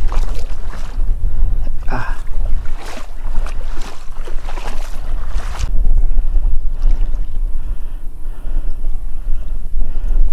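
Wind buffeting the microphone in a low, steady rumble, over water sloshing and splashing around legs wading through shallow water.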